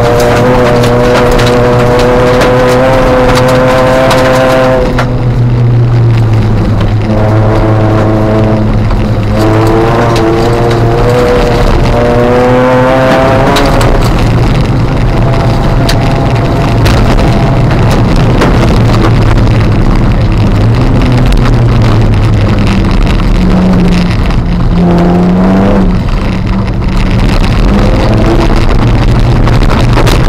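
Ford Fiesta ST150 rally car's four-cylinder engine heard from inside the cabin at full effort, its pitch climbing and dropping back several times with gear changes in the first half, over a constant loud rush of tyres and gravel on a wet road.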